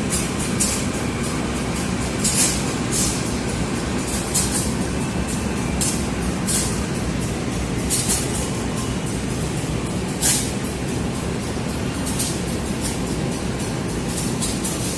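CC201 diesel-electric locomotives running with a steady low engine rumble, broken by short sharp clicks or hisses every second or two.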